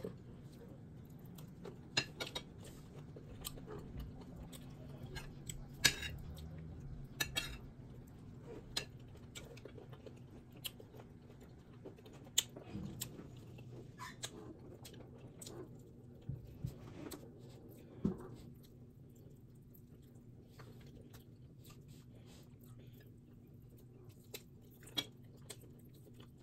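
A person eating close to the microphone: chewing, with scattered small clicks of a metal spoon and fork against a plate and plastic food tubs, over a low steady hum.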